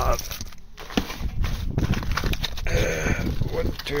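Cardboard spark plug boxes and packaging being rummaged through in a car's boot: scattered rustles and light knocks over a steady low rumble.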